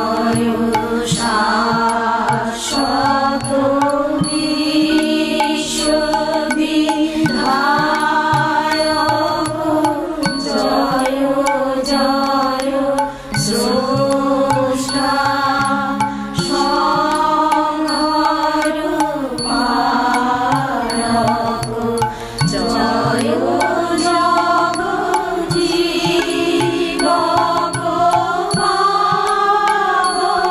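Bengali devotional prayer sung as a chant, one melodic vocal line holding long, gliding notes over light instrumental accompaniment.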